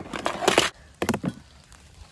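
Handling noise at a plastic tub and cutting board as a knife and utensils are moved: a loud rustling scrape lasting about half a second, then a quick cluster of knocks about a second in.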